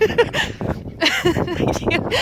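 Men's voices outdoors: laughter in short bursts, then a spoken "what?" near the end.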